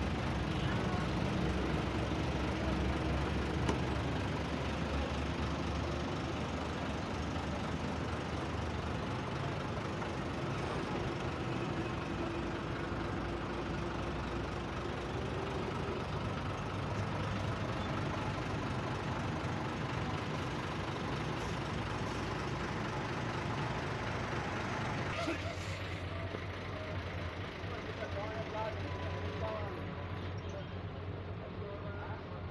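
Steady truck-yard noise: a truck engine running at idle, with indistinct talking mixed in. The sound turns duller about 25 seconds in.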